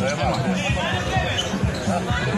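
A basketball being dribbled on an outdoor court, short repeated bounces, over background music and the chatter of voices.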